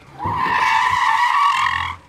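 A tyre-screech sound effect: one steady, high squeal of nearly two seconds.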